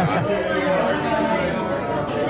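Crowd chatter: many voices talking over one another close by.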